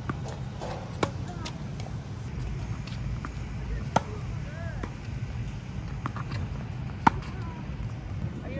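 Tennis rally on a hard court: racket strings striking the ball, the three loudest hits about a second, four seconds and seven seconds in, roughly three seconds apart. Softer ball bounces and more distant hits fall between them.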